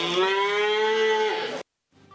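A calf mooing once: a single long call that rises slightly in pitch and drops at the end, cut off abruptly about a second and a half in.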